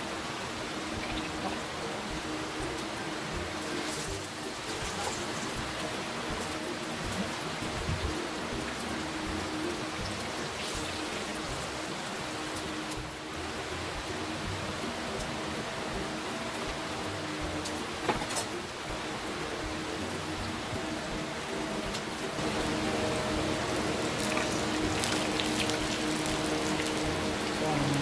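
Pork chop frying in hot oil in a pan: a steady crackling sizzle with a few sharper ticks, a little louder over the last few seconds.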